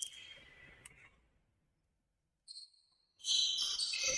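Sounds from the basketball court in a gym: a short high-pitched squeak at the start, a quiet stretch, then a louder run of overlapping high-pitched squeaks from about three seconds in.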